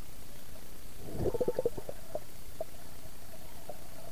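Muffled underwater gurgling picked up by a submerged camera, with a short run of bubbling pulses about a second in and a few faint ticks after.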